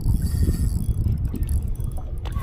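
Wind buffeting the microphone on an open boat deck, a steady low rumble, with a few light clicks from the angler's rod and reel as he fights a hooked fish.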